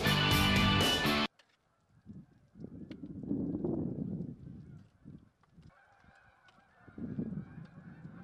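A flock of geese honking overhead, heard once background guitar music stops abruptly about a second in.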